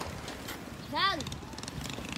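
One short voiced call from a person, rising and then falling in pitch, about a second in, over a faint outdoor background.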